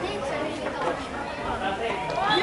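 Indistinct chatter of several spectators' voices at the sideline, no single word clear.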